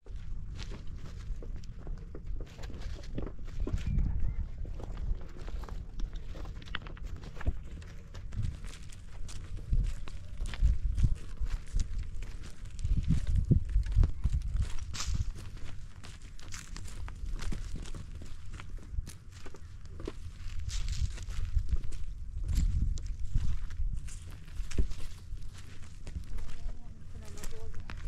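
Footsteps crunching irregularly on loose stony ground, over repeated low thuds.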